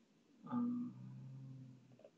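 Speech only: a long, drawn-out hesitation "uh" held at one steady pitch for over a second, starting about half a second in.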